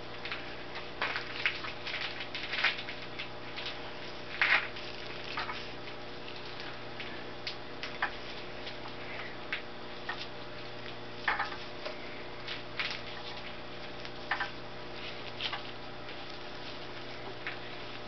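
Irregular clicks and scrapes of a combination wrench turning and being repositioned on the nut of a threaded-rod cylinder sleeve puller, as the wet sleeve slides up out of a Perkins 226 engine block. A steady hum runs underneath.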